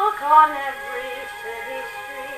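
Acoustic Victor talking machine playing a 78 rpm shellac record of a 1940s orchestral song, the music coming straight from the gramophone's horn with a thin, old-record tone and faint surface hiss.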